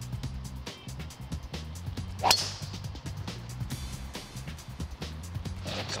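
Background music with a steady beat, and about two seconds in a single sharp crack of a golf club striking the ball.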